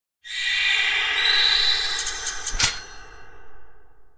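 Logo sting sound effect: a shimmering whoosh swells in about a third of a second in. A quick run of four sharp metallic hits follows around the middle, the last the loudest, and the sound fades out near the end.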